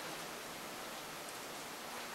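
Steady, even background hiss of the room and recording, with no distinct events.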